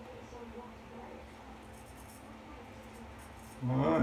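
Diamond Edge straight razor scraping through lathered stubble on the chin, faint short scratchy strokes over a low steady hum. A man's voice starts just before the end.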